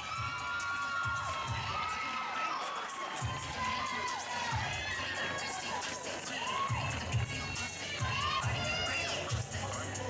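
Audience cheering, full of high-pitched shrieks and screams.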